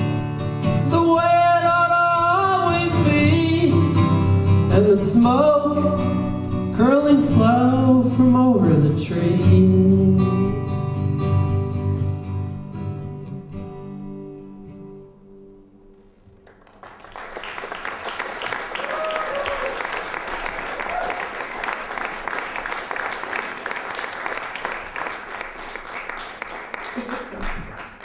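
Man singing with a strummed acoustic guitar, the song ending on a held chord that fades out about sixteen seconds in. Audience applause then starts and carries on.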